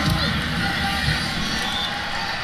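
Large football-stadium crowd noise during a field goal kick, a steady dense roar heard through a television broadcast.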